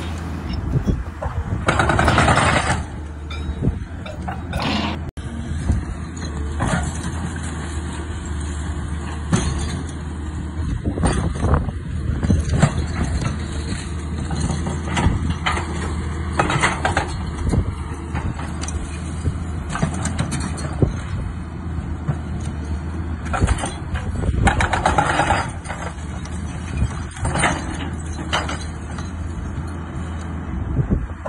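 Excavator's diesel engine running steadily, with irregular crashes and scraping of breaking brick and concrete as it demolishes a house.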